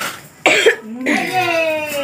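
A single short cough about half a second in, followed by a person's voice held on a long, slowly falling tone.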